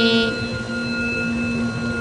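A steady musical drone holds one chord under a pause in a devotional chant, after the last sung syllable fades in the first moment.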